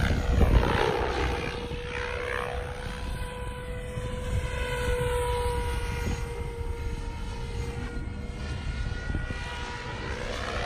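SAB Goblin Black Thunder 700 electric RC helicopter flying aerobatics: a steady whine from its drive over the rush of the spinning main rotor blades. It is loudest in the first second as it passes closest, then settles to an even level.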